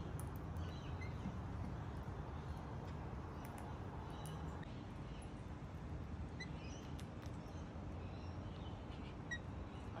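Faint, short bird chirps in the distance, a few of them in the second half, over a steady low background rumble.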